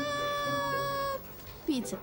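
A voice holds one steady, high-pitched note for just over a second, then stops abruptly. A brief falling vocal sound follows near the end.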